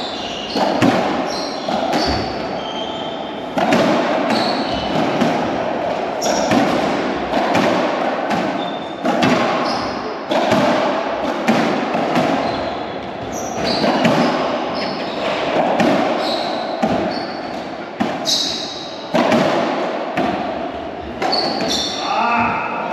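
Racquetball rally in an enclosed court: the ball cracking off racquets and walls many times, each hit echoing round the court, with short high squeaks of shoes on the wooden floor between hits.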